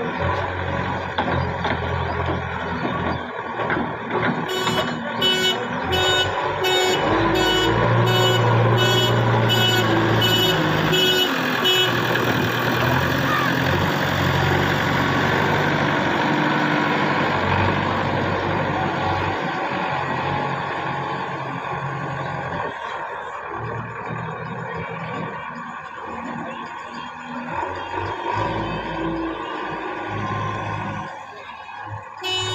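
JCB 3DX backhoe loader's diesel engine running under load, louder for a few seconds near the middle. About five seconds in, a reversing alarm beeps about twice a second for roughly seven seconds.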